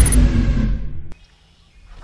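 The end of a logo sting: a deep boom that dies away over about a second, then a single click and a near-quiet pause.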